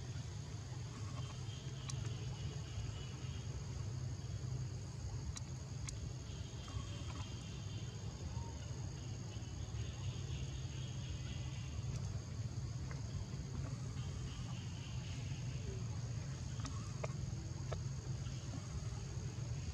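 Outdoor insect ambience: a steady high-pitched insect drone, with stretches of insect trilling that come and go every few seconds, over a steady low hum and a few faint clicks.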